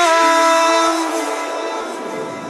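A held synthesizer chord in an electronic dance track: several steady tones sounding together with a noisy wash above them, and no beat underneath. It slowly fades.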